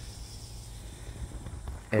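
Open-air ambience: a low, uneven rumble of wind on the microphone under a steady, faint high-pitched insect drone. A man's voice starts right at the end.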